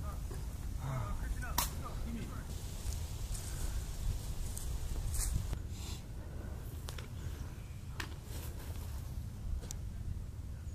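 Outdoor field ambience: a steady low rumble with faint distant voices, and a few sharp cracks or snaps scattered through it.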